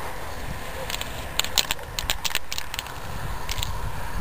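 Aerosol spray-paint can spraying onto a canvas: a steady hiss with a run of sharp crackling clicks through the middle.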